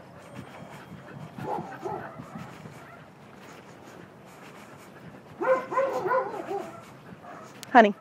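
A dog barking in the distance: a couple of faint barks about a second and a half in, then a quick run of about four barks around five and a half seconds in.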